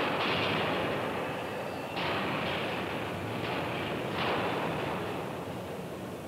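Reversing rolling mill taking a hot steel ingot through its rolls: a loud, steady rumbling noise that surges again about two seconds in and about four seconds in, then fades toward the end.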